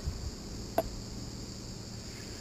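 Steady high-pitched insect chorus from the surrounding bushland, with one short sharp click a little under a second in.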